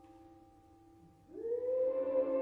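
Classical orchestral music: a held chord fades away. A little over a second in, a new long note slides upward into place and swells loudly.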